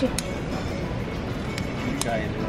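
A single sharp click shortly after the start from a lamp's inline cord switch being pressed, over steady shop background noise with music playing.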